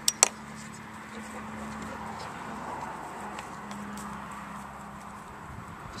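Two sharp metallic clicks just after the start as a battery lead's clip is pushed onto a side terminal of a car battery, then a few faint taps over a low steady hum. The connection is tenuous at best.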